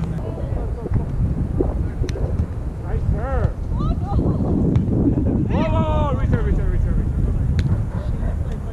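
Wind buffeting the microphone with a steady low rumble, while volleyball players shout two calls during a rally: a short one about three seconds in and a longer one a couple of seconds later. A few sharp slaps of hands striking the ball.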